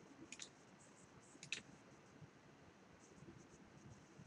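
Computer mouse clicking: a pair of short, sharp clicks just after the start and another pair about a second and a half in, over near-silent room tone.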